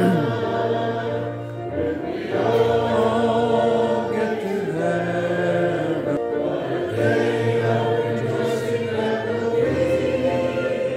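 A congregation singing a hymn together, in long held notes.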